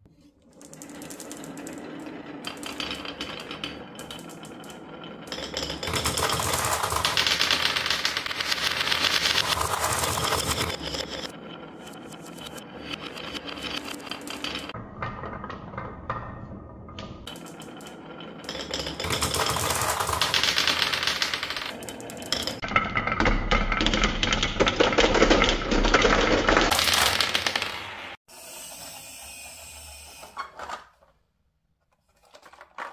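Glass marbles rolling and clattering down wooden marble-run tracks: a dense rattle of many small clicks that swells and fades several times, cutting off abruptly near the end.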